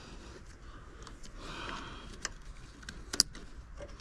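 Light handling noise with two sharp plastic clicks, the louder one near the end, as bulb holders are fitted back into a van's rear light cluster.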